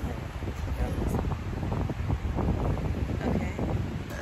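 Wind buffeting a phone's microphone outdoors, a steady low rumble, with faint voices talking underneath.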